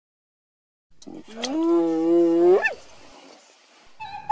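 A single long animal call, held on one pitch for over a second and ending in a sharp upward glide, after about a second of silence.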